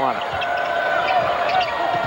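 Basketball game sound from a TV broadcast: steady arena crowd noise with a basketball being dribbled on the hardwood floor and drawn-out high squeaks of sneakers on the court.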